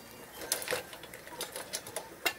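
Hard snow crab shells and legs clicking and tapping against one another and against a stainless steel steamer pot as the crabs are set in it, about half a dozen light, irregular knocks.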